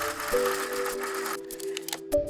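Music with held notes over a steady mechanical whirring from a slide projector's mechanism; the whirring stops about one and a half seconds in.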